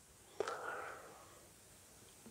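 A man's soft mouth click about half a second in, followed by a faint breath that fades out within a second.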